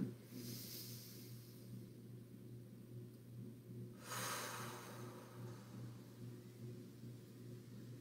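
A slow, deep breath taken as a breathing exercise: a faint inhale through the nose at the start, then about four seconds in a louder exhale out through the mouth that fades over a second or so. A steady low hum runs underneath.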